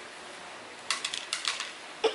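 Metal spoon scraping and clicking against a plate as fruit is scooped: a quick run of light clicks lasting under a second, about halfway through.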